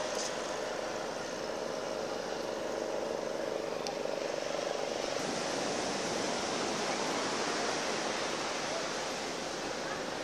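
Steady wash of sea surf breaking on a sandy beach, with a murmur of voices from the crowd on the sand.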